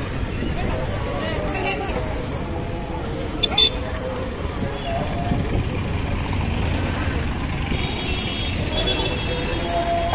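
Busy street traffic with autorickshaw and car engines running and a crowd of people talking over one another. A sharp clack about three and a half seconds in, and a horn toot near the end.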